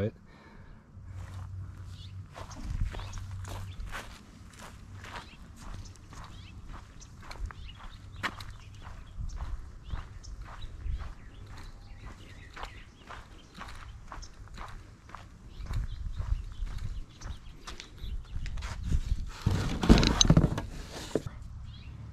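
Footsteps with scattered short knocks and clicks of handling, irregularly spaced, and a louder burst of clatter near the end.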